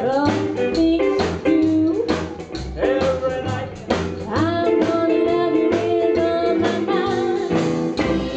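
Live rockabilly band music: a woman singing held, gliding notes over upright double bass, electric guitar and drums keeping a steady beat.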